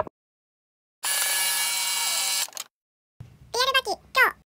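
After a second of dead silence, an edited-in transition sound effect plays for about a second and a half, bright and steady, then stops abruptly; a man's voice begins speaking near the end.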